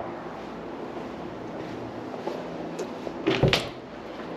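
A storage closet door being unlatched and pulled open: a short clatter of latch and door about three seconds in, over steady faint background noise.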